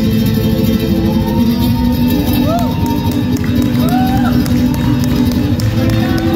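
Flamenco-style playing on an acoustic guitar, with audience voices over it from about a second in.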